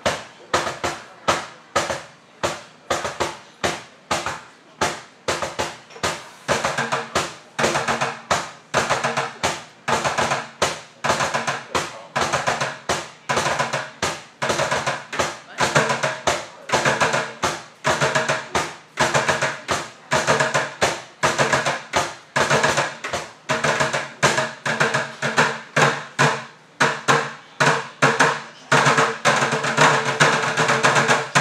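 Bucket drumming: three players beating drumsticks on buckets in a steady, driving rhythm of sharp hits, the pattern filling out with faster strokes between the accents about seven seconds in.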